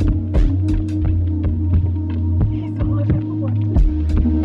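Electronic music: a steady low bass drone under sustained tones, with scattered clicks and ticks. The deep kick drops out after the first second and comes back just before the end.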